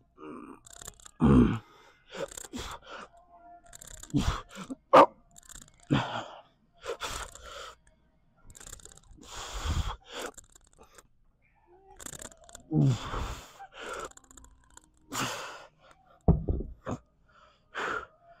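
A man breathing hard after a heavy set of dumbbell lateral raises: a string of loud gasping breaths and exhalations, a second or two apart, some with a low groan, as he recovers from the effort.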